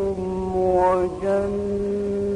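A male reciter's voice in mujawwad Quran recitation, chanting a short melodic turn and then holding one long, steady note from about a second in.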